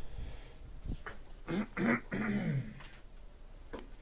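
A man's short, low mumbling vocal sound around the middle, with no clear words, and a couple of faint light clicks.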